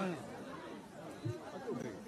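Faint chatter of voices, low in level.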